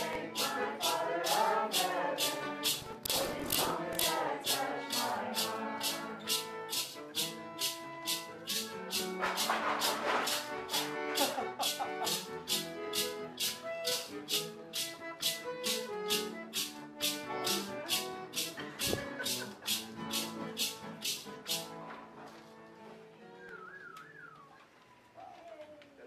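Music: voices singing together over a shaker keeping a steady beat. The shaker stops about 22 seconds in and the song fades.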